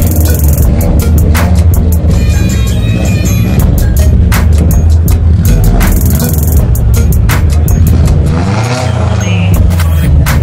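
Music with a steady beat, over a Subaru Impreza's flat-four engine revving.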